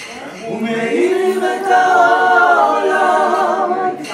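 All-male a cappella vocal group of five singing in close harmony with no instruments, the voices swelling over the first second into long held chords with vibrato.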